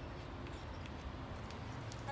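Quiet outdoor background with a steady low rumble and a few faint, light ticks.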